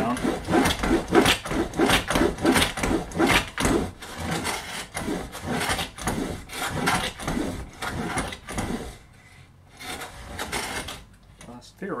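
Metal combination plane cutting a cross-grain dado in a pine board, with its nickers extended to score the fibres ahead of the cutter. The strokes come about two to three a second, pause briefly, then a couple more follow near the end.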